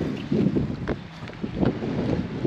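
Wind buffeting the microphone in irregular gusts, with small waves lapping at the shoreline.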